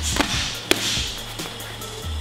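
Boxing gloves striking focus mitts in a quick jab, cross and body rip combination: three sharp smacks within the first second, over background music.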